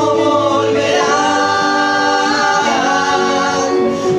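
Acoustic band performing a rock ballad: several male voices singing in harmony on long held notes, over acoustic guitar and upright double bass.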